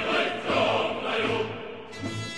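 Background music: a choir singing, with a brief break in the sound near the end.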